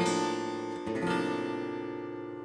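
Gibson Hummingbird acoustic guitar, tuned down a whole step to D standard, strumming a C-shape chord that rings on. A second strum about a second in comes as the bass note starts walking down, and the chord fades slowly afterwards.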